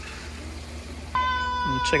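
Water trickling in a small rock-lined garden stream. About a second in it gives way to a steady held tone under a voice.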